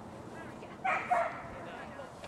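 A dog gives two quick barks in a row, about a second in.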